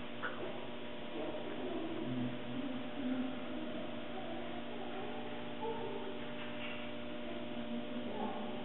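Steady hum in a large room, with faint, indistinct background sounds now and then.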